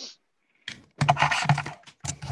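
Typing on a computer keyboard picked up through a video-call microphone. It starts about a second in, with a low steady hum underneath.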